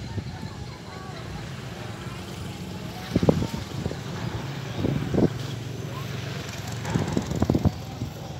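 A steady low engine hum, with a few short distant voices calling about three, five and seven seconds in.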